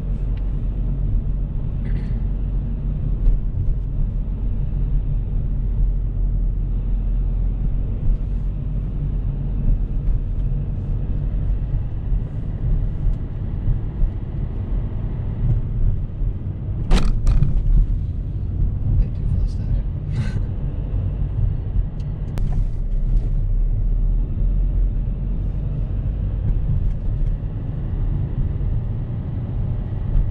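Steady low rumble of a car's engine and tyres heard from inside the cabin while driving at low speed. A few brief sharp clicks come about halfway through.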